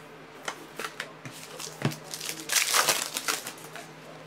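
Foil trading card pack wrapper crinkling as it is torn open, a loud crackling burst about two seconds in. A few sharp clicks from handling cards come before it.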